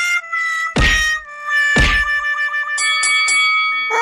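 Cartoon sound-effect music: held synthetic tones with two heavy, deep thuds about a second apart, then three short high notes in quick succession near the end.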